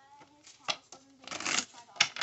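A deck of tarot cards being shuffled by hand: short, crisp bursts of cards riffling and slapping together, one about two-thirds of a second in and a longer one near the end, with a faint voice murmuring in between.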